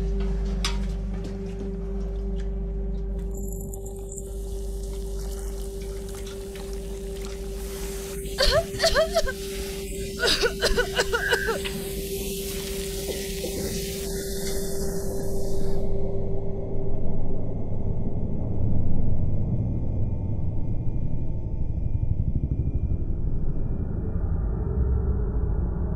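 Film soundtrack: a sustained music drone over a low rumble, with a loud hiss of chemicals reacting and fuming from a few seconds in until about 15 seconds. Short strained vocal sounds break in between about 8 and 11 seconds, and the rumble swells toward the end.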